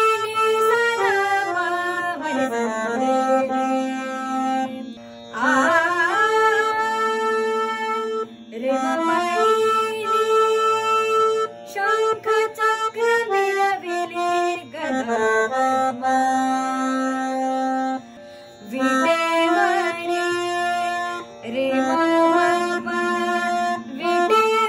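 Harmonium playing a slow devotional abhang melody in phrases with short pauses between them, over a steady low drone. A voice sings along, sliding between notes.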